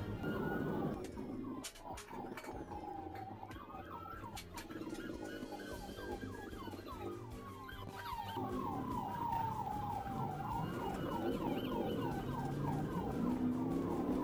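Police car siren switching between a slow rising-and-falling wail and a fast yelp of about four rising chirps a second.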